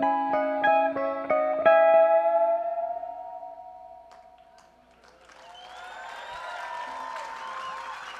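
Plucked strings playing a last quick run of notes, the final note ringing and fading out about five seconds in. Then an audience starts cheering and applauding at the end of the song.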